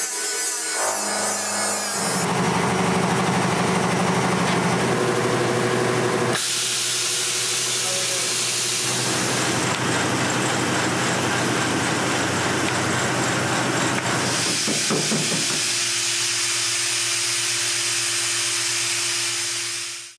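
Hand-held electric grinder running against a surface in a workshop: a steady motor hum under a hissing grinding noise. The sound changes abruptly several times, as if cut between clips, and stops suddenly at the end.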